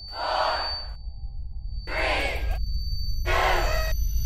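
Horror trailer sound design: a low rumbling drone with a thin, steady high whine, broken by short bursts of rushing noise that come about every second and a half.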